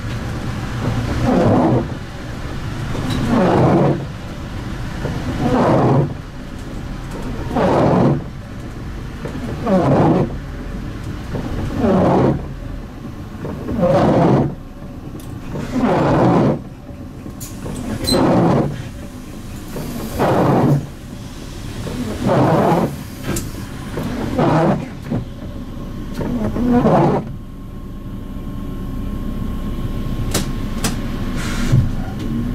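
Windscreen wipers of a MAN Lion's City bus sweeping across a rain-wet windscreen, one sweep about every two seconds, stopping a few seconds before the end.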